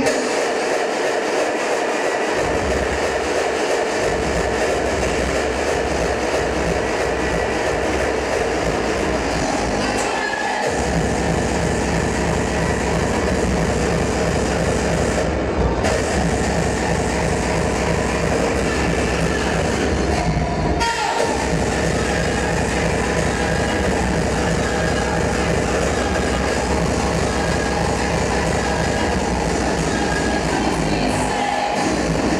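Loud electronic dance music from a DJ set over a club sound system. The bass is cut at the start and comes back in about two seconds in. It briefly drops out twice more, about ten and twenty-one seconds in.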